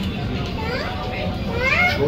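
Children's voices chattering and calling out, with a run of high rising squeals near the end, over a steady low background hum.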